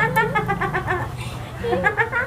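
Group laughter from young women: a high-pitched laugh in quick, even pulses for about a second, then a shorter laugh near the end.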